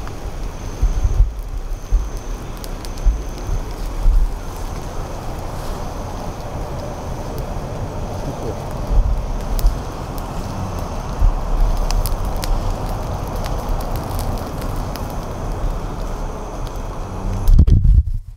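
Petrol-soaked cloth torch on a pole burning against a hornet nest: a steady rush of flame with scattered crackles, over low thumps of wind and handling on the microphone. A loud jolt of handling noise comes near the end.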